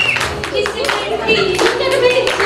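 Hands clapping in a quick, uneven run, with a voice and faint music beneath.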